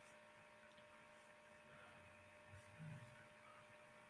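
Near silence: room tone with a faint steady electrical hum, and a brief faint low sound near the end.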